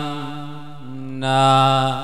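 A man's voice chanting a sermon in the sung Isan lae style, holding long notes. One note fades, and a new, slightly lower held note starts about a second in and swells louder.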